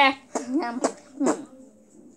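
A boy's voice making short beatbox-style vocal syllables: four quick voiced sounds with sharp starts in the first second and a half.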